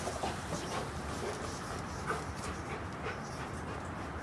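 Rottweiler's breathing and mouth sounds as it plays with a rubber dental chew toy, with a brief high note about two seconds in.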